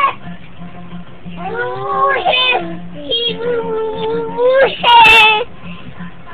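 Small children's wordless high-pitched vocalising: a wavering cry, then a long held note, then a loud, shrill squeal near the end.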